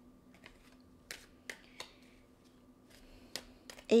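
Playing cards handled in the hands: a scatter of light, sharp clicks and snaps of card stock, about eight over a few seconds. A faint steady hum runs underneath.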